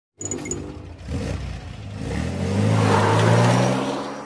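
Sports-car engine sound effect: a couple of short clicks at the start, then the engine revving with its note rising in pitch over the last two seconds, loudest near the end.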